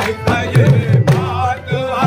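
Live qawwali: a harmonium's sustained reeds and a singing voice over steady tabla strokes and hand claps.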